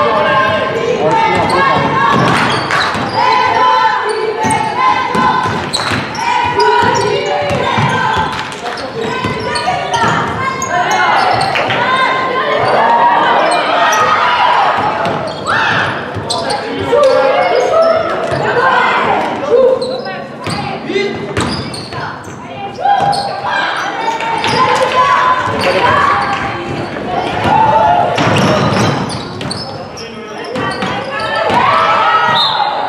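A basketball bouncing on a hardwood gym floor during live play, with players and people courtside calling out. Everything echoes in a large sports hall.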